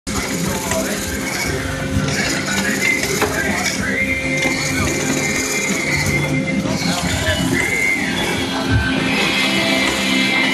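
Nursery potting machine running with a steady mechanical hum and clatter, under music from a radio and people's voices.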